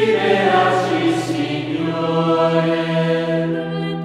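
Choir singing a slow chant, voices holding long steady notes, with a rush of noise through the first second or two.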